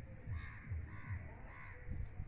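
A crow cawing faintly, about three calls in quick succession, over a low rumble.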